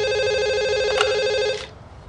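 Desk telephone ringing: one long, steady electronic ring that stops about one and a half seconds in.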